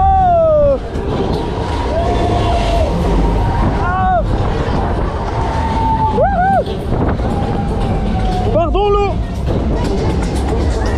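Drawn-out voice calls over a steady low rumble of wind and rain on the microphone during a fairground thrill ride. One long falling call opens it, and three short rising-and-falling calls follow at about 4, 6 and 9 seconds, with music in the background.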